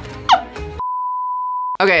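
A brief laugh, then a single steady, high beep lasting about a second with all other sound cut out beneath it: a censor bleep laid over a spoken word.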